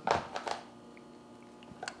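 Faint scraping and a few light clicks of a metal portion scoop digging into mashed potatoes in a plastic tub, mostly in the first half second; otherwise quiet room tone.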